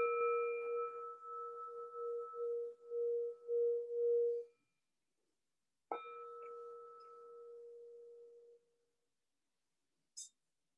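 Singing bowl struck twice, about six seconds apart. Each strike rings in a steady tone with a fainter higher overtone. The first ring wavers in loudness and cuts off suddenly after about four and a half seconds; the second is quieter and fades after about two and a half seconds.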